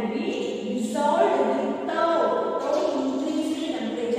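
A woman's voice with long held, sing-song pitches.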